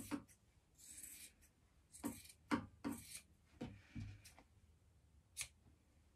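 Fabric scissors snipping through sewn cuff pieces, trimming the seam allowances and clipping the corners: a series of short, faint cuts at irregular intervals, with a sharper click near the end.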